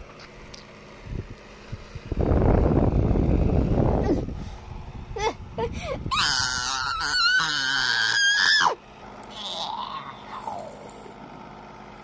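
A child's high-pitched, wavering squeal lasting about two and a half seconds and cutting off abruptly, with a quieter rising-and-falling vocal sound after it. Before the squeal comes a loud rumbling burst of about two seconds.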